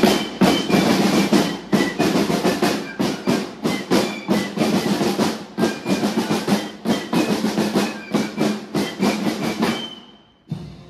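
Marching snare drums of a military fife-and-drum band beating a dense, fast rhythm, with short high fife notes over them. Near the end the drumming stops and a single high fife note is held.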